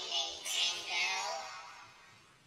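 A cartoon character's voice put through a low-pitched 'G Major 7' chord voice effect, so speech comes out as warbling, synthetic-sounding sung notes. It comes in two phrases, a short one and then a longer one that fades out near the end.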